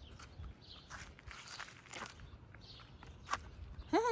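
Footsteps of a person walking at an even pace on a paved street, a soft step about every half second.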